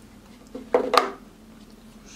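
Cardboard cosmetics box being slid open around a cream jar: a brief scrape and two sharp knocks in the middle, with quiet handling either side.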